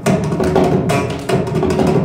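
Mridangam played in an uneven run of sharp strokes, several a second, its tuned head ringing at a steady pitch beneath them.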